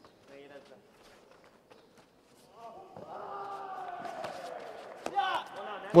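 A man's long drawn-out call from the arena, held for about two seconds while sliding slowly down in pitch, quieter than the commentary. Faint bare-foot thuds and slaps on the tatami mat come and go as the karate fighters move.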